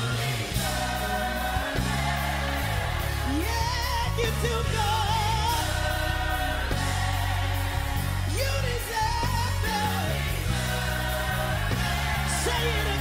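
Gospel worship song: a lead voice sings held notes with vibrato over a band with a steady bass line.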